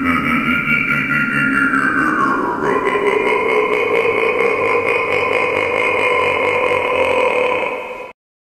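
Electronic outro sound: a sustained drone of several steady tones, one of them gliding down in pitch about two seconds in, cutting off suddenly at the end.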